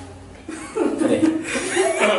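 A man chuckling and laughing, starting about half a second in.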